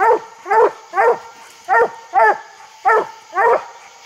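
Coonhound treed at a tree, giving a steady run of treeing barks, about two a second with a short break partway through.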